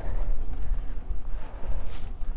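Wind buffeting the camera's microphone as a bicycle is ridden, a steady low rumble, with a short click near the end.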